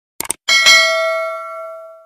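Subscribe-animation sound effect: two quick clicks, then a bright notification-bell ding that rings out and fades away.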